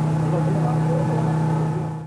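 An engine running steadily at one low pitch, with indistinct voices of people around it.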